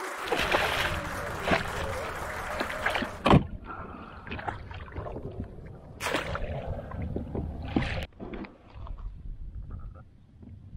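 A hooked northern pike thrashing and splashing at the surface beside a kayak, with a loud knock about three seconds in. Further splashing and knocks follow as the fish is scooped into a landing net.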